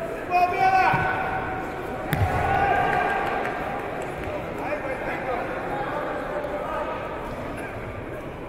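Echoing sports-hall background of indistinct voices, with a brief falling call near the start and a single sharp thump about two seconds in.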